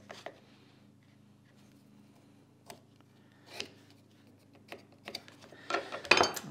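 Pencil marking a line along a small metal try square on a wooden board: a few soft taps and one short scratch of the pencil, over a faint steady hum.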